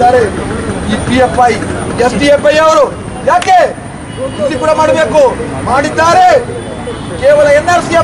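A man making a loud speech in Kannada, his voice rising and falling in emphatic phrases, with steady street traffic noise behind.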